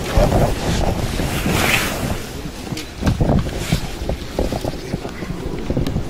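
Wind buffeting the microphone: a loud, uneven low rumble that swells and dips, with a few short knocks.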